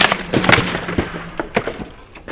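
Skateboard knocking and clattering on rough concrete: a quick series of sharp cracks, the loudest at the start and about half a second in.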